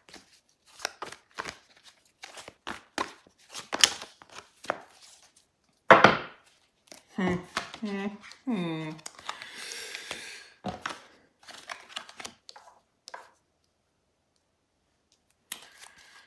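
Tarot cards being shuffled and handled: a long run of quick, sharp flicks and taps, with a denser shuffling hiss a little past the middle. A voice murmurs briefly about halfway through.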